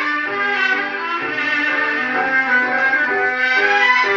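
Argentine tango orchestra (orquesta típica) of bandoneons and violins playing an instrumental passage of a 1945 recording, played back from a record on a turntable.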